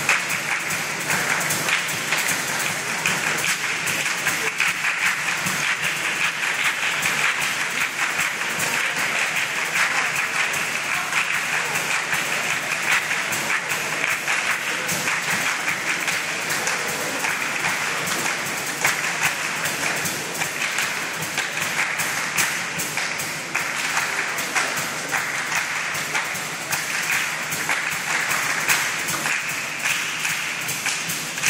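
A choir singing with steady rhythmic handclapping throughout.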